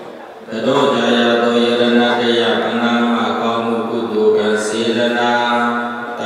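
Buddhist devotional chanting: a recitation intoned on a steady pitch with long held notes, starting about half a second in.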